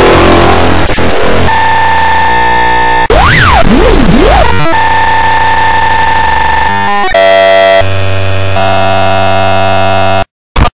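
Loud, harsh electronic noise and steady buzzing synthesizer-like tones, changing abruptly from block to block, with a pitch zigzagging up and down about three seconds in. It is a cartoon voice clip mangled beyond recognition by stacked audio effects.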